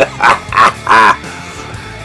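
A man laughing in three or four short pulses in the first second, over background guitar music that carries on alone after that.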